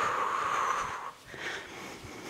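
A woman's long exhale through the mouth, a breathy rush that fades out about a second in.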